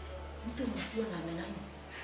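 A woman's voice speaking in a low, drawn-out, wavering tone, over a steady low hum.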